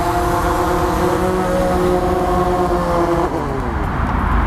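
DJI Phantom 4 quadcopter's motors and propellers whining steadily as it hovers low and sets down. Near the end the whine drops in pitch as the motors slow.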